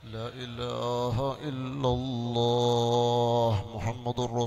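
A man's voice chanting a melodic devotional invocation, the pitch wavering over the first two seconds, then settling into one long held note in the second half.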